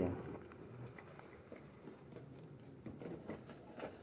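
Faint, scattered small clicks and soft rustling in a quiet room.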